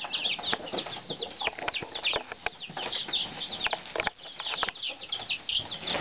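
A box full of baby chicks peeping, many short high chirps overlapping without a break, with scattered light taps and clicks.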